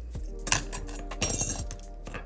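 A few light clinks and a brief scratchy rustle about halfway through, from gloved fingers pressing tape down over a flex connector inside an open iPad, over background music.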